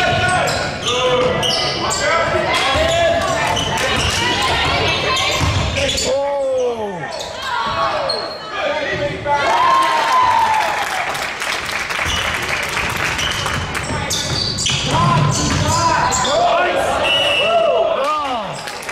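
A basketball bouncing on a hardwood gym floor, with rubber sneakers squeaking on the court in short arching squeaks and voices calling out, echoing in the large gym.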